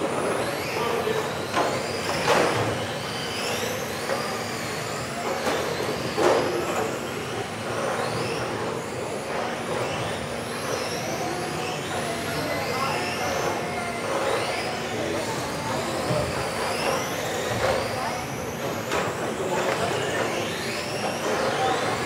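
Electric RC touring cars racing: several small motors whine at high pitch, rising and falling over and over as the cars accelerate and brake around the track. A few sharp knocks stand out.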